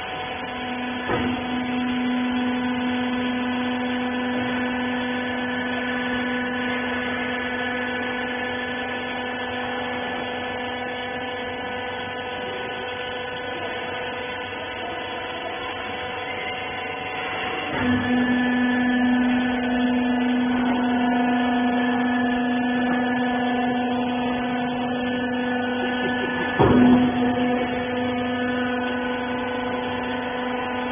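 Cotton-wiper baling machine running with a steady motor hum. A deeper pump note comes in with a clunk about a second in and fades away before the middle. The note returns with another clunk a little past halfway, and the loudest clunk comes near the end.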